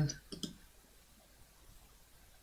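A couple of quick computer mouse clicks about half a second in, then a quiet room.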